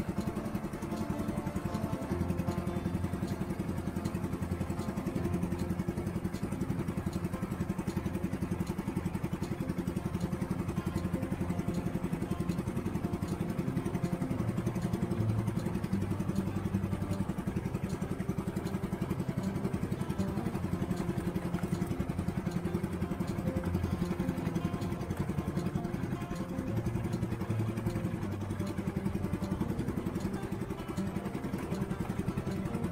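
Small fishing boat's engine running steadily as the boat moves along at trolling pace.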